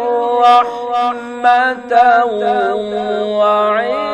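A male Quran reciter's voice holding a long, melismatic phrase in maqam nahawand, unaccompanied. The voice winds through ornamented turns without a break and settles onto a lower note about two seconds in.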